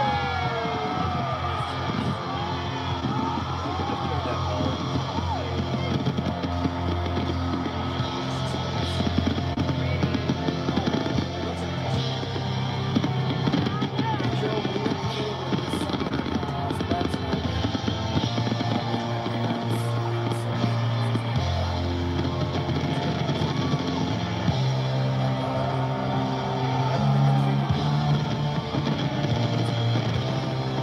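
Music from a live New Year's Eve television broadcast, playing through the speaker of a 1954 RCA CT-100 color TV, running steadily with voices mixed in.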